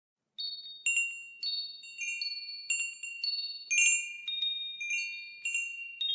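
Wind chimes tinkling: high, clear metal tones struck irregularly, about two a second, each ringing on and fading into the next.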